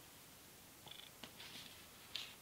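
Near silence: room tone, with a few faint clicks and a soft hiss about halfway through.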